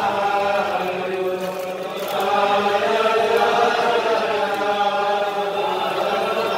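A roomful of men singing a slow melody together in unison, the held notes swelling louder about two seconds in: a Hasidic niggun sung at the table.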